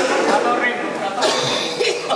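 Indistinct voices of people talking close by, with a cough a little past the middle.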